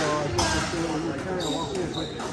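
Two sharp knocks of a squash ball within the first half second, over spectators' chatter, with a brief high squeak near the end.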